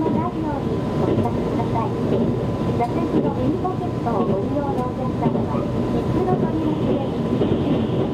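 Running noise inside the carriage of a JR Kyushu 787-series limited express train at speed: a steady rumble of wheels on the rails with a faint steady tone above it.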